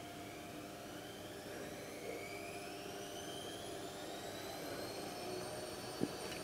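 A jet aircraft's steady rushing noise with several faint whining tones that rise slowly in pitch.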